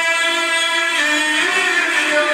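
Two men singing a devotional recitation together in unison, hands cupped to their ears, holding long drawn-out notes that bend in pitch about halfway through.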